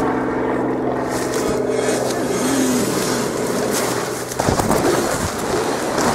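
A steady engine drone that cuts off suddenly about four and a half seconds in, followed by rough wind noise on the microphone.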